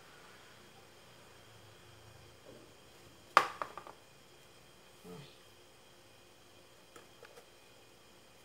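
A small plastic glue bottle set down on a wooden craft board: one sharp tap a little over three seconds in, followed by a few lighter ticks. Faint handling sounds and small ticks follow as foam pieces are pressed onto the box.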